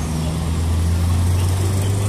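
A motor vehicle's engine running close by: a steady low hum that grows a little louder and higher near the end.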